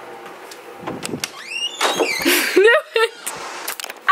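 Short high squeals and laughter from a person's voice, bending up and down in pitch, after a quiet first second or so, with a few sharp clicks near the end.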